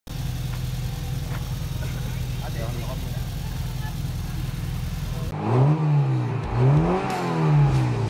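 A race car's engine idling steadily, then revved three times in quick succession, each rev rising and falling back, starting a little over five seconds in.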